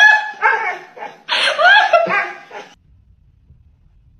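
A dog vocalizing in a run of short pitched calls, each rising and falling in pitch, that stops a little before three seconds in.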